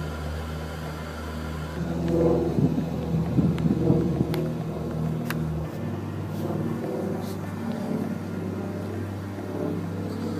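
Steady low hum of city traffic, with a motor vehicle engine growing louder about two seconds in and easing off after about five seconds.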